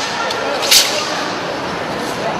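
A single sharp, whip-like snap about three quarters of a second in, from a move in a wushu straight-sword routine, over the murmur of voices in a large sports hall.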